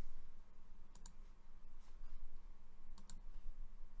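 Computer mouse clicks: a quick double click about a second in and another about three seconds in, over a faint steady low hum.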